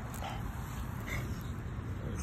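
English bulldog puppy making two brief small vocal sounds, the first just after the start and the second about a second in, over a steady low rumble of wind on the microphone.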